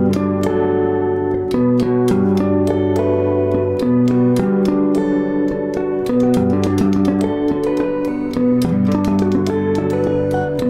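Electric guitar played with tapping harmonics: a quick run of sharp tapped notes over ringing chord tones that change every second or so.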